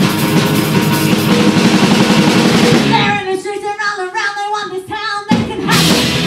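Punk rock band playing live: distorted electric guitars, bass and drum kit with vocals. About halfway through the instruments stop for roughly two seconds while a lone sung vocal line carries on, then the full band comes back in.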